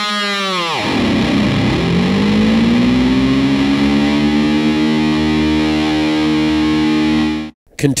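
Dean Razorback electric guitar with a Floyd Rose tremolo, heavily distorted through a Dime amp: a held note dives steeply in pitch about a second in, then glides slowly back up and is held steady, a whammy-bar dive bomb. The sound cuts off suddenly near the end.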